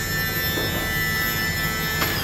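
Electric motor of an ambulance's powered stretcher system whining steadily at one high pitch while it drives the stretcher out along its track.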